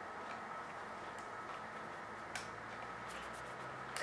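Faint, scattered clicks and ticks of a wiring connector being handled and pressed into a garage door opener's circuit board, a few sharp clicks spread over several seconds.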